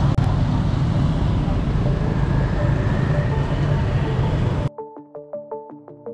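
Motorbike, scooter and car traffic passing through a street intersection, a steady engine rumble. About four and a half seconds in it cuts off abruptly and light background music begins: plucked keyboard notes at a quick, even pace.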